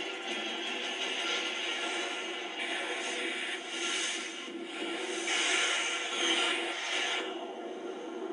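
A television programme's soundtrack playing through the set's speaker: a steady, hissy mix with faint music under it, swelling a few times in the upper range.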